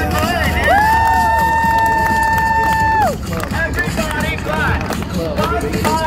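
A street performer's loud shouted calls to the crowd, with one long held shout of about two seconds near the start that drops off at the end, over a steady rumble of city and crowd noise.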